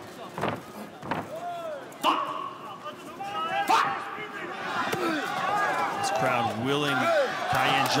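Arena crowd shouting and calling out during a kickboxing exchange, with several sharp smacks of strikes landing in the first four seconds. The crowd noise grows fuller and louder from about five seconds in.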